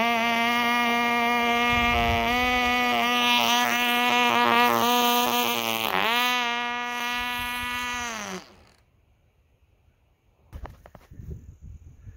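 Small 1/2A glow-fuel two-stroke model aircraft engine running flat out with a steady high-pitched buzz. The pitch dips briefly about six seconds in, then drops a little as the sound fades out about two seconds later.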